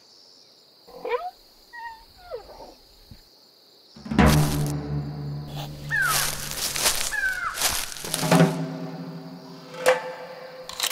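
A few faint gliding animal calls, then about four seconds in a music track starts with a loud hit and sustained low chords, with sharp hits and falling cries layered over it.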